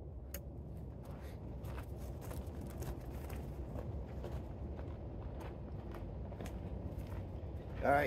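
Quiet outdoor background: a low steady rumble with scattered faint clicks and taps.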